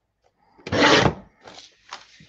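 Guillotine paper trimmer's blade arm brought down through a sheet of paper: one short rasping cut lasting about half a second, then softer rustles as the paper is slid across the trimmer board.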